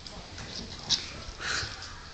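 Dog eating food off a plate on the floor: short wet mouth and chewing sounds, with a sharp one about a second in and a longer one soon after.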